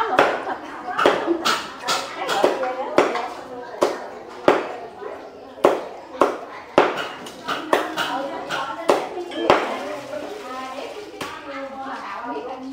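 A knife chopping roast pork on a chopping board: sharp, irregular strokes about twice a second.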